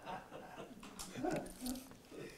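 Quiet laughter: a man chuckling softly in short breaths.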